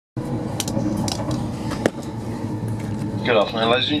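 Steady running noise inside a Class 390 Pendolino electric train carriage travelling at speed, with a few light clicks. Near the end the on-board public-address announcement begins, its voice thin as through a small loudspeaker.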